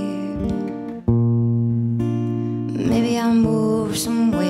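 Acoustic guitar strumming with a pedal steel guitar holding long, sustained chords in a slow country song. A new chord comes in about a second in.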